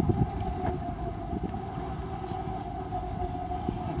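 Vehicle driving slowly over rough ground: a steady low rumble with scattered rattles and knocks.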